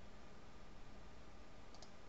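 Faint steady room hiss with a quick double click near the end, from a computer mouse button.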